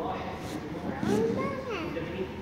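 A small child's voice vocalizing without clear words: high-pitched calls that rise and fall, loudest in the second half.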